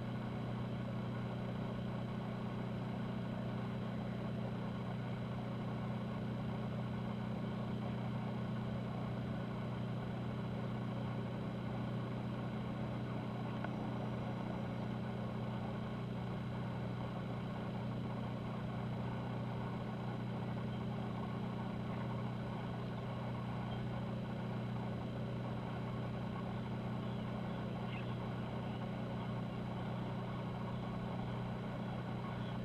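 Cruise ship Zaandam's machinery humming as the ship moves slowly past: a steady low drone that does not change.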